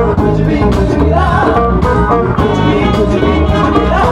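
A woman singing into a microphone over a live band playing upbeat Caribbean-style music, amplified and loud.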